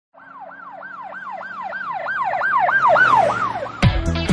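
A fast-warbling siren sound effect, its pitch sweeping up and down about three times a second and growing steadily louder. Just before the end it cuts off as music comes in with a loud hit.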